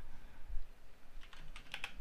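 Computer keyboard being typed on: a short run of quick keystrokes in the second half, after a soft low thump about half a second in.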